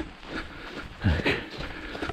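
A runner's footsteps and breathing while running on a snowy trail, with a short vocal sound about a second in.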